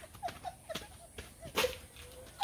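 Women laughing in short, breathy bursts: a quick run of falling 'ha's in the first second, then one louder, breathier laugh past the middle.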